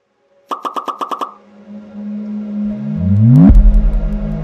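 Synthesized logo sting: a quick run of about eight beeps, then a low drone with rising sweeps that build to a deep boom about three and a half seconds in, the low rumble holding on after it.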